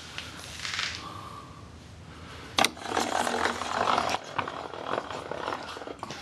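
Handling sounds on a shop-built wooden router-lift table: a sharp click about two and a half seconds in, then a few seconds of irregular rubbing and scraping.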